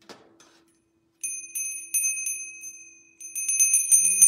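A small brass hand bell rung by hand: after a light knock at the start, four separate rings about a third of a second apart, then fast continuous ringing near the end.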